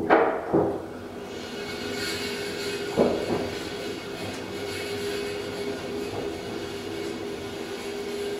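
KONE hydraulic elevator car travelling down: a steady hum with several held low tones and faint high tones runs through the descent. A thud sounds right at the start, and a shorter knock about three seconds in.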